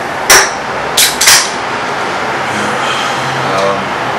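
Aluminium beer cans knocking sharply on a tabletop cluttered with cans: three knocks, one about a quarter second in and two close together about a second in.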